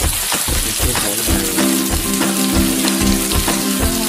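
Food sizzling on a hot electric griddle plate: a steady frying hiss. Background music plays under it, with a regular beat and sustained tones that come in about a second in.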